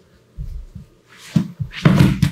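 Two grapplers in gis hitting and sliding on a foam mat as one throws his weight forward. There is a dull thud about half a second in, then the scuffing of bodies and gi fabric, louder near the end.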